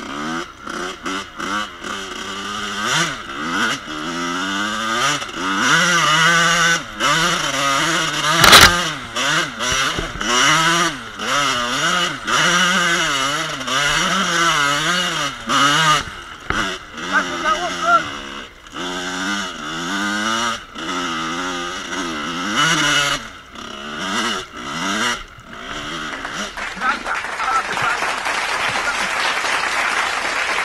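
1986 Kawasaki KX125's two-stroke single-cylinder engine revving up and down over and over as the bike is ridden, with one sharp knock about a third of the way in. Near the end the revving stops and a steady hiss takes over.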